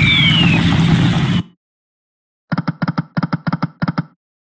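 Electronic slot-machine game sound effects. A loud win effect with a low rumble and a falling whistle-like tone cuts off suddenly about a second and a half in. After a second of silence, rapid paired clicks of the reels spinning begin, about four pairs a second.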